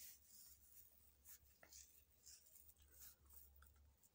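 Near silence: faint room tone with a few soft ticks.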